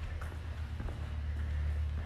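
A steady low hum with a few faint footsteps on a concrete floor.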